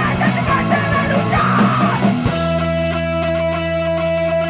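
Hardcore punk band playing loud and fast, with shouted vocals and drums. A little over two seconds in, the drums and vocals drop out and a single held chord rings on steadily.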